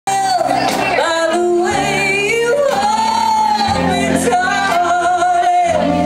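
A woman singing a melody with long held notes, accompanied live by an electric guitar and an electric bass.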